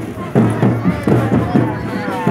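Marching drum band playing a quick, steady drum beat with a low thump on each stroke. People's voices are heard over it.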